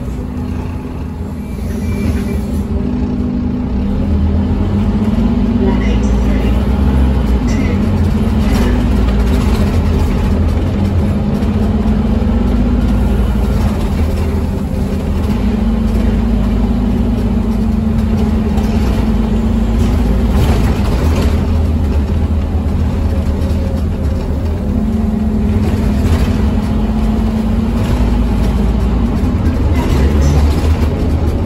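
Scania OmniCity bus's diesel engine heard from inside the passenger cabin, pulling away and driving on, its drone stepping up and down in pitch several times as the gears change. Tyre noise on a wet road runs underneath, and the sound grows louder about two seconds in as the bus gets going.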